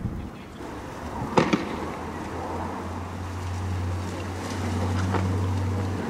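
A sharp bang about a second and a half in, doubled by a quick echo, and a fainter bang near the end, over a low steady drone.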